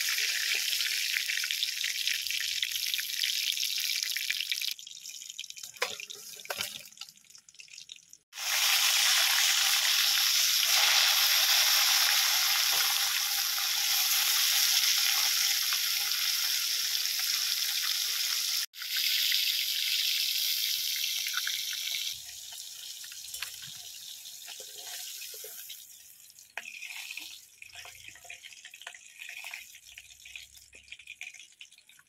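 Fish pieces deep-frying in hot oil in a wok: a steady sizzle that drops away about five seconds in, comes back loud a few seconds later and runs until about two-thirds of the way through, then gives way to quieter scattered clinks and taps.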